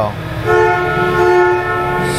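A steady two-note horn tone sounds for about a second and a half, starting about half a second in, over a low steady background hum.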